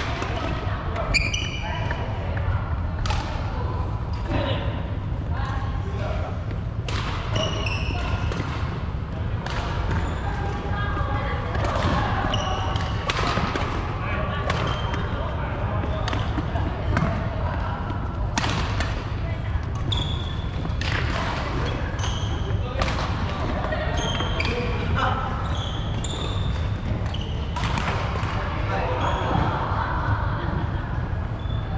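Badminton play in a large hall: rackets striking the shuttlecock in sharp cracks, many times over, with short high shoe squeaks and footfalls on the wooden court. A steady low hum and voices echo underneath.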